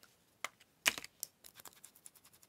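A few light plastic clicks and taps from handling a small plastic ink pad case and pressing a foam ink blending tool onto the pad. The sharpest click comes just before a second in, followed by lighter ticks.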